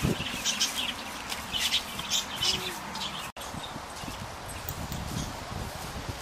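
Two goats butting heads: a sharp knock right at the start, with small birds chirping repeatedly over the pen. After a short dropout about three seconds in comes low rustling and shuffling on straw.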